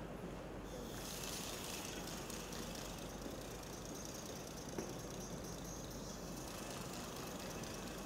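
Compressed air hissing steadily out of pumped-up plastic bottles through the PVC-tube air valves of a Strandbeest air-logic model, starting just under a second in. This is the air flow that makes the valves switch back and forth between 'yes' and 'no'.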